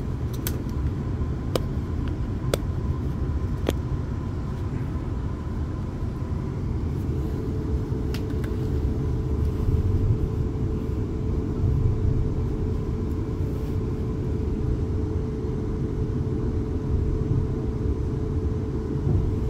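Inside a Class 450 Desiro electric multiple unit under way: a steady low rumble of the wheels and running gear on the track, with a few sharp clicks in the first few seconds and a steady hum that comes in about seven seconds in.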